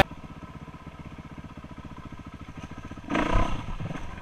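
Dirt bike engine running at low speed, a rapid, even pulsing, swelling louder briefly about three seconds in.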